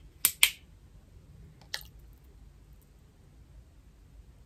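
Screw cap of a small plastic water bottle being twisted open: two sharp clicks in quick succession at the start, then one more click a little under two seconds in, with quiet between.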